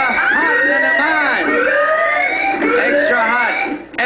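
Game-show sound effect of repeated rising, siren-like sweeps, several overlapping, marking an 'Extra Hot' question.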